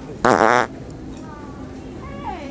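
A Pooter fart-noise toy letting out one loud fake fart of about half a second, its pitch wavering up and down.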